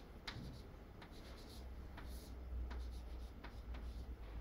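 Chalk writing on a blackboard: a string of short taps and scratches as symbols are written, several a second at irregular spacing, over a steady low hum.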